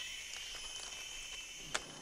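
Faint, steady outdoor background hiss with no distinct source, broken by one sharp click near the end.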